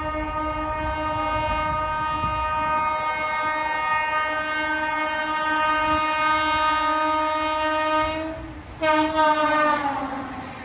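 WAP7 electric locomotive's horn sounding one long steady blast of about eight seconds, then a short second blast that slides down in pitch as the locomotive rushes past at about 130 km/h, over the low rumble of the approaching train.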